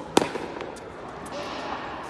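Tennis rally on a hard court: a single sharp crack of a racket striking the ball just after the start, followed by fainter ball and footwork sounds.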